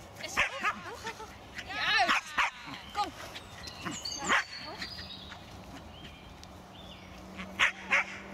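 A small dog barking while it runs, in a few short bursts of high yaps, the loudest about two and four seconds in.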